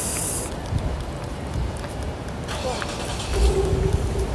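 City street traffic: a steady low rumble of passing vehicles, with a brief hiss in the first half second and a short steady tone near the end.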